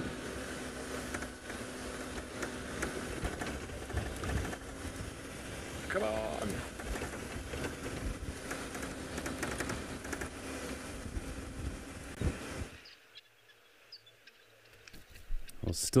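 Open safari vehicle driving on a dirt track: steady engine and road rumble with small knocks and rattles. It cuts off suddenly about 13 seconds in, leaving near silence.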